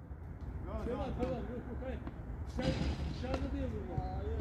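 Faint voices of people talking at a distance, in two short stretches, over a steady low hum.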